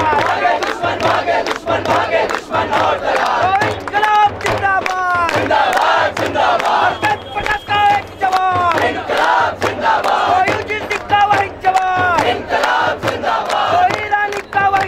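A crowd of protesters shouting slogans together, with short shouted phrases that fall in pitch and repeat about once a second, over a fast steady beat of sharp strikes.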